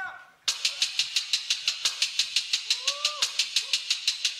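Beatboxer's vocal hi-hat pattern on a loop station: crisp hissing ticks repeating evenly at about eight a second, starting half a second in. A short hummed tone rises and falls about three seconds in.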